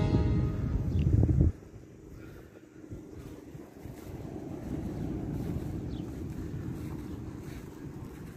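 Wind buffeting a phone microphone: a heavy rumble for the first second and a half that drops off suddenly, then a quieter steady wind rumble. The tail of background music fades out at the very start.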